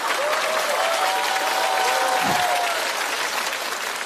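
Studio audience applauding in a steady round of clapping, with a few voices calling out over it.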